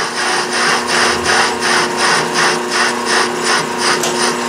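Metal lathe facing a gray cast iron backing plate: a steady motor and gear hum under a rhythmic scraping from the cutting tool, about three to four strokes a second.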